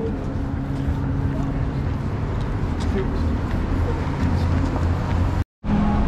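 Street ambience: a steady low engine hum from road traffic, with indistinct voices of people walking. The sound cuts out for a moment about five and a half seconds in.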